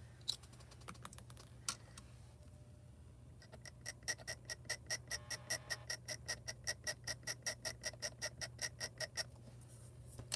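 Craft knife blade scratching at holographic foil on its carrier sheet, a few scattered clicks and then a fast, even run of short scrapes, about seven a second, for several seconds. The blade is scraping a dust-spot blemish off the foil sheet.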